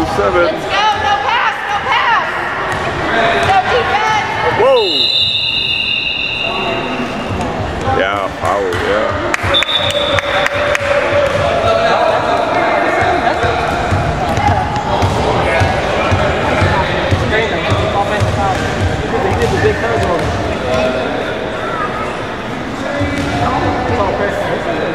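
Basketball bouncing on a hardwood gym floor amid overlapping voices of players and spectators, echoing in a large gym. A long, shrill whistle-like tone sounds about five seconds in, and a shorter one comes near ten seconds, most likely the referee's whistle stopping play.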